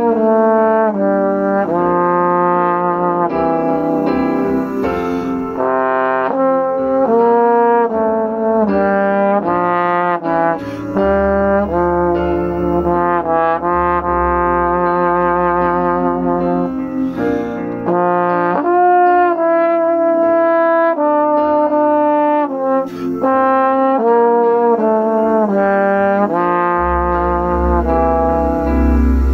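Yamaha YSL882 tenor trombone playing a melody in long sustained notes, accompanied by a digital piano whose low bass notes sound under it.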